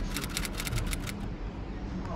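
A fast, even run of sharp clicks, about ten a second, which stops a little over a second in, over a steady low street rumble.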